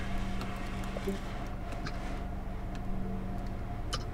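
Steady low background hum with a few faint, short clicks.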